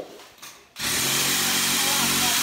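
Handheld power tool, which the user calls a drill, cutting into Christmas tree branches: a previous run dies away at the start, and after a short pause it starts again about a second in and runs at a steady speed.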